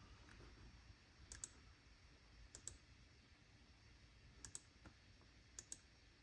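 Faint computer mouse clicks, about four quick double clicks spread a second or so apart, over near-silent room tone.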